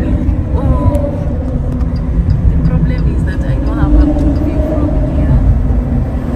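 Steady low road rumble of a car driving across a suspension bridge, heard from inside the cabin, with a faint steady hum over it.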